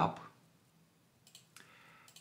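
A computer mouse clicking twice, faintly, in the second half.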